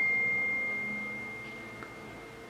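A single high, pure bell-like ring, like a struck chime, fading slowly away.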